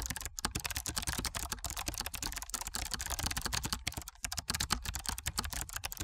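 Rapid computer-keyboard typing, a continuous run of key clicks with a few short breaks.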